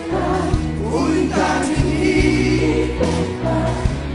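Live sertanejo music: a band with a steady bass line and a male lead vocal, with many voices singing along.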